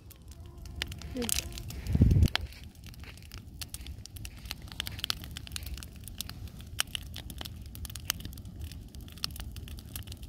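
Wood campfire crackling with frequent sharp pops over a low steady rumble. A loud low thump comes about two seconds in.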